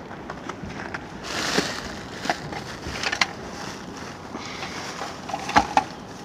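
Plastic bags rustling and items clattering as a hand rummages through a dumpster: a short rustle about a second and a half in, then scattered sharp clicks and knocks, the loudest near the end.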